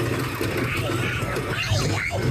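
Small family roller coaster train running along its track with a steady low rumble, riders' voices rising in shouts near the end.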